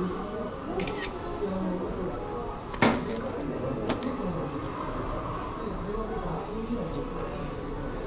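Indistinct chatter of several people talking in the background, with a few sharp clicks; the loudest click comes about three seconds in.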